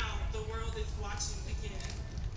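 A voice speaking at a distance, over a steady low rumble.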